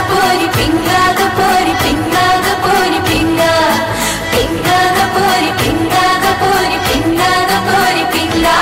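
Bollywood film song: women's voices singing over a fast, steady drum beat and instrumental backing.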